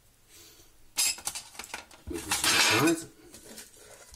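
Metal cookset pieces (windshield, pot stand and pot) clinking and scraping together as the set is stacked up. There is a single clink about a second in, then a longer stretch of clattering near the three-second mark.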